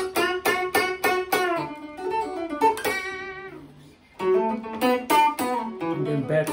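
Guitar playing single plucked notes of the D major pentatonic scale, a quick run of notes at about four a second, then a few notes left to ring. A brief lull about four seconds in, then another quick run of notes.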